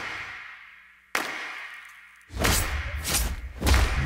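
Two sharp thuds about a second apart, each dying away slowly like trailer impact hits. From about halfway in comes a loud, rough scuffle of a fight, with bodies banging against a wall.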